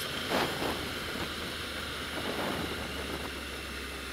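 Wind rushing over the microphone of a motorcycle rider at road speed, with the bike's engine running as a low steady drone underneath.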